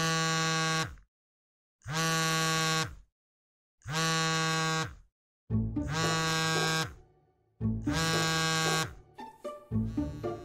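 Mobile phone ringing for an incoming call: five buzzy, steady-pitched rings, each about a second long and about two seconds apart.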